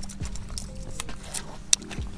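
Small splashes, clicks and taps as a hooked speckled trout is hauled by the line up to the boat's side under a popping cork, with one sharp click near the end; a steady low hum runs underneath.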